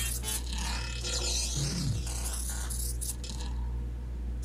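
Animated film soundtrack playing: music with a few short cartoon impact sound effects.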